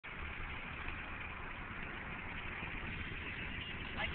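Steady engine and road noise inside a car's cabin while it is being driven.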